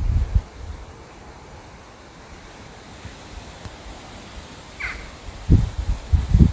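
Wind gusting against the microphone: low rumbles at the start and again near the end, over a steady outdoor hiss.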